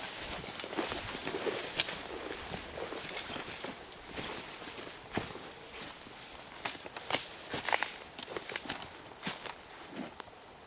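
Footsteps pushing through tall weeds and brush, with irregular crackles and snaps of dry stalks and twigs underfoot, sharpest about two seconds and seven seconds in. A steady high insect buzz runs behind.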